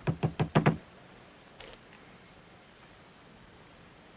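Knuckles rapping on a wooden door: a quick run of about five knocks in the first second, then one faint tap a moment later.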